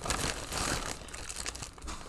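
Plastic packaging crinkling as it is handled, busiest in the first second and thinning out after.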